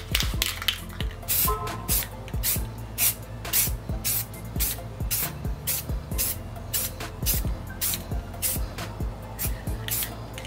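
Rust-Oleum blue aerosol spray paint can spraying a coat of paint, over background music with a steady beat.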